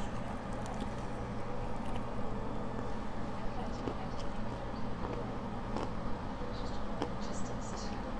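A person chewing food with the mouth closed, close to a clip-on microphone: soft, scattered wet mouth clicks over a steady low hum.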